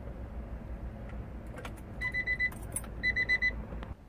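A phone ringing: two short trains of rapid high beeps about a second apart, after a few light clicks.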